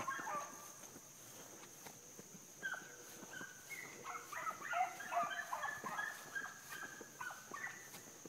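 Pack of rabbit hounds giving voice on a running rabbit's trail: a faint string of short, high, overlapping yelps and bays, many falling in pitch, starting about two and a half seconds in and going on to the end.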